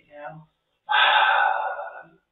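A person's loud, breathy gasp lasting about a second, starting about a second in, after a brief spoken syllable at the start.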